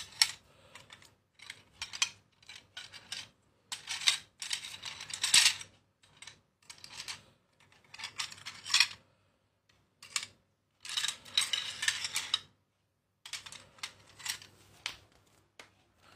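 Curved wild boar tusks clicking and clattering against one another as a hand stirs through a pile of them, in irregular bursts of rattling with short pauses between.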